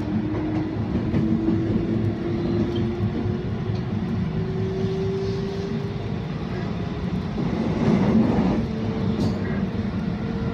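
Inside a JR Osaka Loop Line electric train under way: a steady rumble of wheels on rail with a motor whine that rises slowly in pitch over about six seconds as the train gathers speed, then holds at a higher note. A louder rattle swells briefly near the end.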